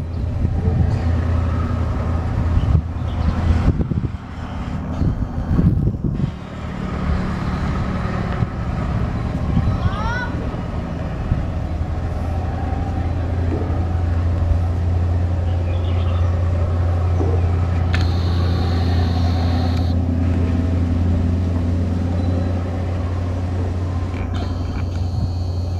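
Diesel locomotive hauling a passenger train away: its engine runs with a steady low drone under the rattle of the moving coaches, rougher and more uneven for the first few seconds.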